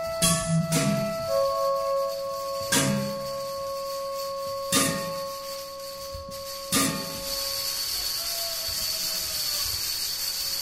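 Computer-controlled robotic acoustic instruments made from everyday objects playing: struck notes that ring on and fade slowly, with a new strike about every two seconds. A steady high tone and a hiss grow louder in the second half.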